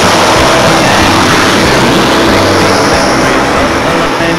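Heavy truck and road noise passing close by, a loud steady roar, with a country song's backing music faintly underneath.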